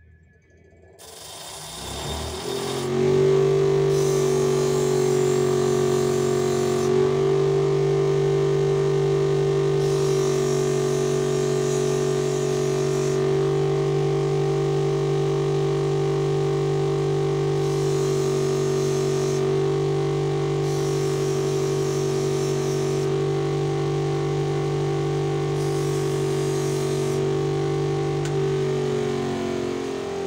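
Electric bench grinder spinning up and running with a steady hum while a screwdriver tip is ground into shape. Six passes of about three seconds each add a high grinding hiss. It runs down near the end.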